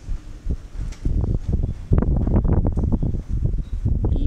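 Wind buffeting the microphone: an irregular low rumble that starts about a second in and carries on in ragged gusts.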